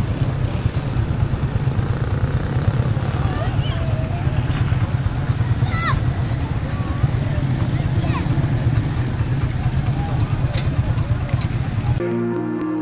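Motorcycle engine idling steadily, with faint voices shouting in the distance.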